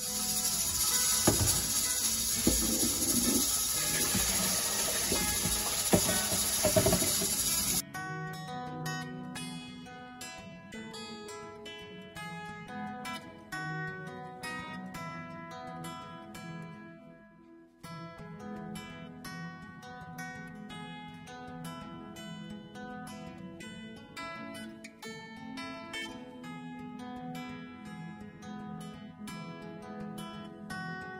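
Water running loudly into a stainless steel kitchen sink for about the first eight seconds, with a few knocks against the metal, then cutting off abruptly. An acoustic guitar music track plays underneath and carries on alone after the water stops.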